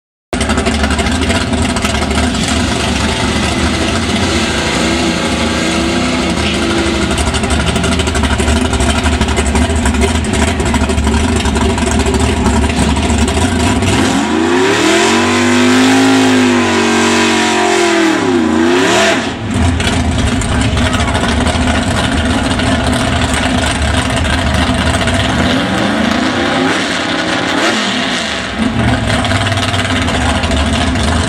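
A big-block V8 drag car runs loudly at a drag-strip starting line, with a rev that rises and falls about halfway through and a shorter rev near the end. The engine cuts in just after the start.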